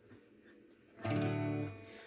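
Acoustic guitar: one chord strummed about halfway through, ringing briefly and then fading. It is the opening chord of the song.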